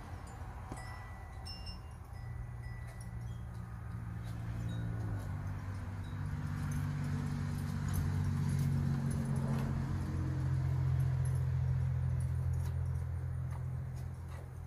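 Wind chimes tinkling lightly, with a few short high notes over the first seconds, above a steady low hum that shifts in pitch about five seconds in and grows louder toward the middle.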